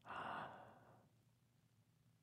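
A person's breathy sigh, an exhale of about a second that fades out, followed by near silence.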